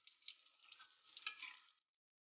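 Faint sizzling of eggplant chunks frying in oil in a wok, stirred with a metal spatula. The sound cuts out abruptly shortly before the end.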